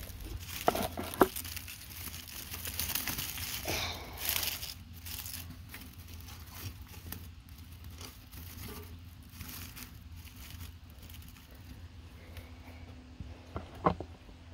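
Dry stalks and sticks rustling and crinkling as they are handled and pushed into the firebox of a small cast-iron stove, with a couple of sharp clicks about a second in and a louder stretch of rustling a few seconds in.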